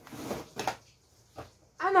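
Rustling and handling noise as someone moves about and reaches for objects, with a single short knock about a second and a half in.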